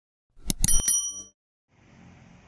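Sound effects for a subscribe-button animation: a few quick clicks about half a second in, with a high bell ring like a bicycle bell that fades within about a second.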